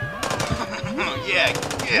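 A rapid string of sharp gunshot-like cracks, many per second, like machine-gun fire.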